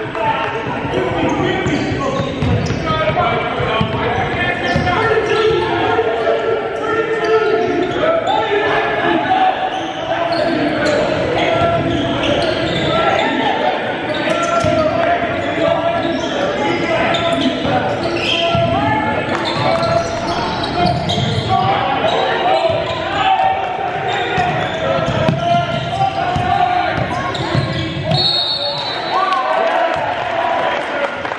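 A basketball being dribbled on a hardwood gym floor during play, with a steady mix of players' and spectators' voices, echoing in a large gymnasium.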